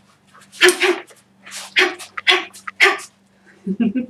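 A boxer's short, sharp breathy exhalations, a burst with each punch while shadow boxing. Near the end come a few muffled knocks and rustles as her clip-on microphone comes loose.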